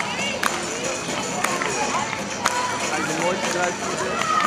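Outdoor crowd of onlookers talking and calling out, with a sharp knock striking about once a second, likely the beat of music for the dancers.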